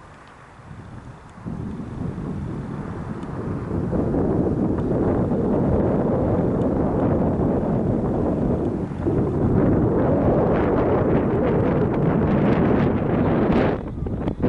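Wind buffeting the camera's microphone: a loud, low, gusting noise that swells about two seconds in and stays loud, with small surges.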